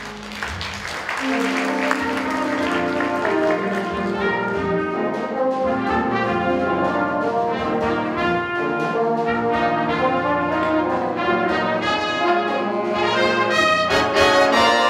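Jazz big band playing: trumpets, trombones and saxophones in full ensemble over piano, bass and drums. The band swells louder in the first two seconds, then plays on at full volume.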